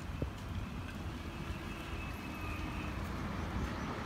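Low, steady outdoor background rumble, with a faint steady hum through the middle.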